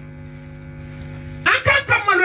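Steady electrical hum of a microphone and sound system, a few pitched tones held level with no voice over them; a woman's amplified voice comes back in about a second and a half in.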